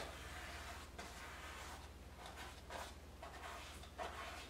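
Quiet room with a steady low electrical hum, and a few faint soft brush strokes of oil paint on a stretched canvas.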